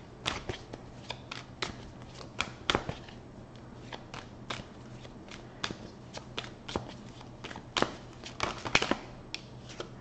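A deck of tarot cards being shuffled by hand: a run of irregular soft card clicks and slaps, with thicker flurries about two seconds in and again near the end.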